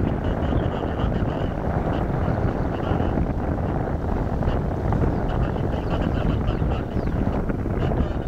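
Steady low roar of a Boeing 787's Rolls-Royce Trent 1000 jet engines as the airliner rolls along the runway, mixed with wind on the microphone.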